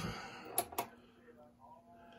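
Two sharp clicks about half a second in, a quarter second apart, followed by a faint steady hum.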